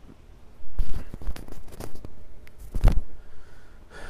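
Close rustling and scraping handling noise right at the microphone: a run of irregular scrapes starting about a second in, loudest near three seconds in.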